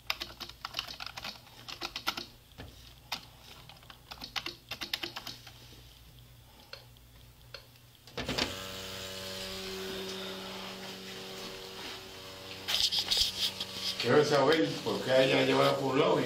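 Typing on a keyboard: quick bursts of clicking keystrokes with short pauses between. About eight seconds in a steady hum switches on, and a voice comes in near the end.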